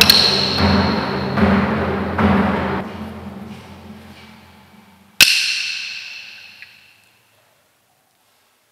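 Struck percussion after a chanted prayer's "Amen": a strike with a high ring over a low rumble and a few rolling pulses, dying away over about three seconds. Then one sharp, bright ringing strike about five seconds in that fades out over two seconds.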